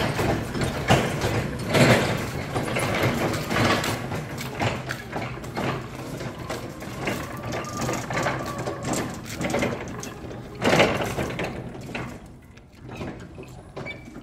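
Toyota Geneo-R electric stand-up reach forklift being driven across a concrete floor: continual rattling and clunking from the truck, with louder knocks near the start and about eleven seconds in, and a faint rising and falling whine around the middle.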